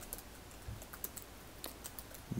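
Faint typing on a computer keyboard: a string of light, unevenly spaced key clicks.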